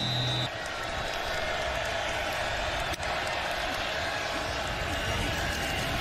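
Large football stadium crowd making a steady, loud crowd noise, following a brief broadcast transition tone in the first half second.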